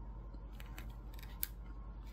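Quiet, crisp crunching of a bite of twice-baked chocolate chip mandel bread being chewed: a handful of short crackling crunches in the first second and a half.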